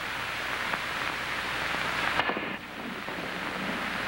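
Steady hiss of an old film soundtrack, with a couple of faint clicks. The hiss changes abruptly a little over two seconds in, at an edit.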